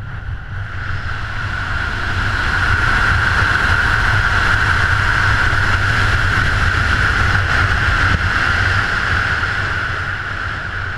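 Wind rushing over a head-mounted action camera under a parachute canopy during descent and landing approach: a loud, steady rush with a deep buffeting rumble and a hissing tone, building over the first few seconds and easing a little near the end.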